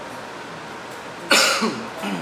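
A single loud cough a little over a second in: a sharp onset that drops in pitch as it fades over about half a second.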